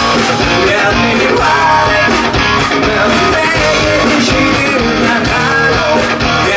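Rock band playing live, with a male lead singer singing over electric guitars and drums at a steady beat.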